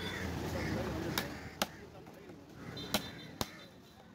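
Heavy fish-cutting cleaver striking through cobia pieces onto a wooden chopping block: sharp single chops, two about a second in and two more near the end, over a murmur of voices.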